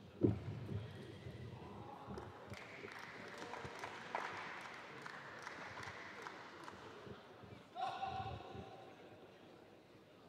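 Table tennis ball clicking off bats and table in a rally, over the murmur of the hall. A sharp knock just after the start is the loudest sound, and a short pitched call or squeak comes about eight seconds in.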